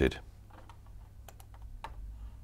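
Computer keyboard keystrokes, about five separate light clicks spread over the two seconds.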